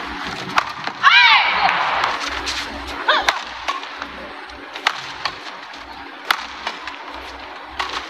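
Badminton rally in an arena: sharp racket hits on the shuttlecock and shoes squeaking on the court floor, with a loud burst of squeaks about a second in and another near three seconds, over a steady crowd hubbub.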